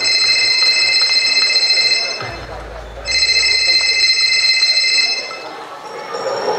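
Recorded telephone ringtone played over a hall's sound system as part of a stage performance soundtrack: two rings of about two seconds each, a second apart.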